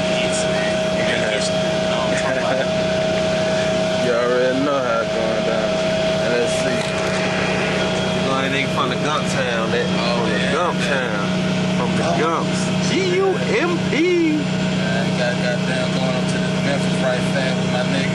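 Steady drone of a Greyhound bus cabin with the engine running: a constant low hum and a steady higher tone. People's voices talk indistinctly over it at moments, mostly between about four and fourteen seconds in.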